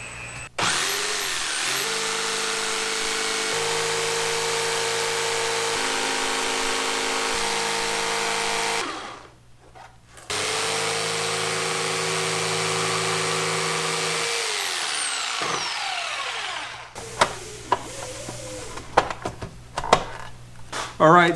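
Corded jigsaw cutting a sheet of eighth-inch textured plastic, in two runs. The motor starts about half a second in and runs for about eight seconds, stops briefly, then runs again for about four seconds before winding down with falling pitch. A few light handling knocks follow near the end.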